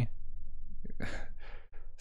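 A man's soft, breathy laugh: a few short puffs of breath about a second in, with little voice in them.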